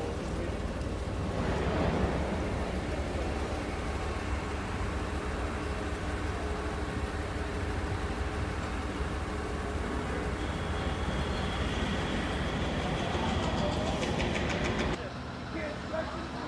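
Propane forklift engine running steadily with a low hum; a high steady tone joins about ten seconds in, and the sound drops away about a second before the end.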